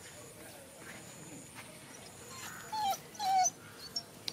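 A dog whining twice in short, high calls near the end, a moment apart, as it tries to get at something hidden under the fence edging.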